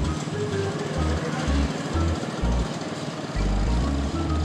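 Background comedy score with a bouncing bass line of short low notes, over the steady noise of a small motorcycle running.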